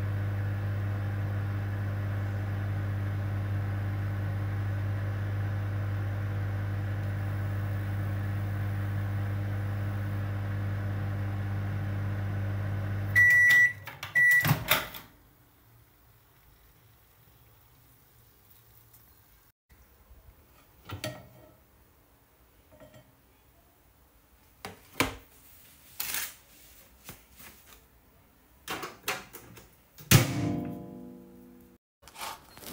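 Microwave oven running with a steady low hum, which stops about 13 seconds in with two high beeps and a sharp click as the door opens. After that it is much quieter, with a few soft knocks and clatters as the dish is handled.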